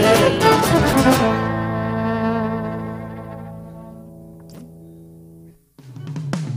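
A folk band of acoustic guitars, violin, electric bass and bombo drum ending a song: a few last struck chords in the first second, then a final chord held and fading away over about four seconds, cut off shortly before the end.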